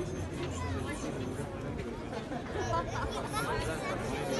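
Crowd chatter: many people talking at once, their overlapping voices blending with no single speaker standing out.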